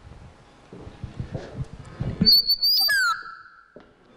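Sound-system microphone feedback: a loud high whistle sets in about two seconds in, holds for nearly a second, then drops abruptly to a lower tone that fades away. Before it come low knocks and rustling.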